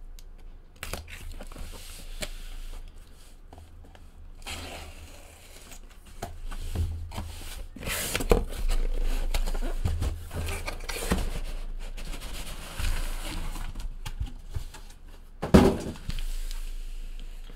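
Corrugated cardboard shipping case being opened by hand: packing tape tearing and cardboard flaps scraping and rustling in uneven bursts, busiest in the middle, with one sharp knock near the end.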